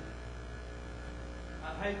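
Steady low electrical mains hum on the recording during a pause in speech, with a man starting to speak near the end.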